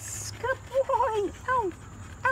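A dog whining in several short, high-pitched whines, each rising and falling, about half a second apart, after a brief hiss at the start.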